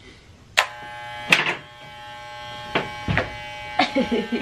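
Corded electric hair clippers switching on about half a second in and then buzzing steadily, just repaired and working again. A few sharp knocks sound over the buzz.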